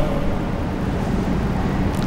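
Steady background noise in a pause between spoken phrases: an even hiss with a faint low hum underneath, with no distinct events.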